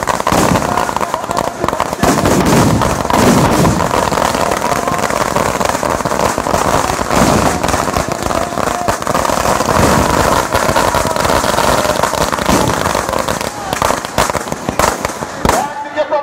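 Firecrackers going off in a dense, continuous run of sharp bangs and crackles. The run cuts off suddenly just before the end.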